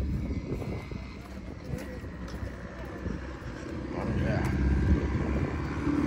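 Car engine drone from a turbocharged Acura RSX rolling slowly toward the listener, growing louder over the last two seconds.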